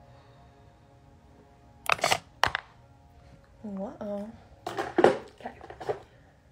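Faint music in the background, then a young woman's voice close to a phone microphone: two short breathy bursts about two seconds in, two short hummed syllables about four seconds in, and more breathy, whispered sounds near the end.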